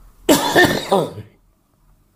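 A man's throat-clearing cough: one loud burst of about a second, starting about a quarter second in.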